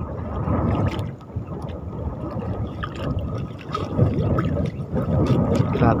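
Water splashing and dripping against the side of a small outrigger boat as a clump of seaweed tangled on a fishing line is lifted and worked at the surface.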